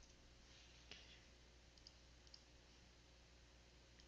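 Near silence: room tone with a few faint, separate clicks of a computer mouse.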